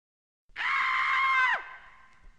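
A cartoon character's high-pitched scream, held for about a second after a short silence, then dropping sharply in pitch as it cuts off.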